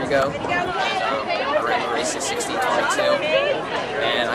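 People talking over one another in overlapping chatter.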